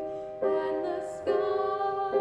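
Students singing a slow choral song, a female voice carrying the melody on long held notes that move to new pitches about half a second and a second and a quarter in.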